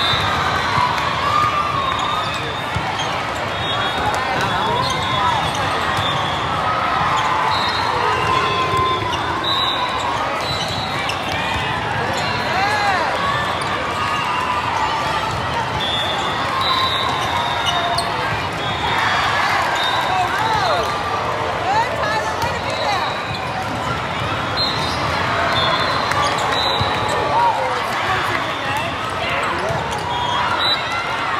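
Many overlapping voices of players and spectators in a large sports hall, with volleyball hits and ball bounces and short high squeaks scattered throughout.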